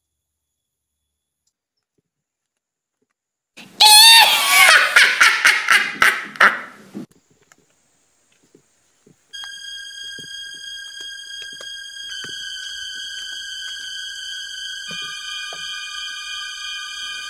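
Silence, then about four seconds in a loud burst of about three seconds of rapid, pulsing, wavering pitched sound. From about nine seconds on comes background music of sustained synthesizer-like notes, with more notes joining twice as it builds.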